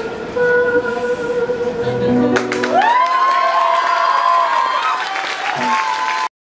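A live band's last held note of the song rings out and stops about halfway through. The audience then breaks into applause, with a rising cheering whoop held above the clapping.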